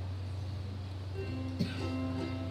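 Ukulele being strummed, its chords starting to ring about a second in as a song begins, over a steady low hum.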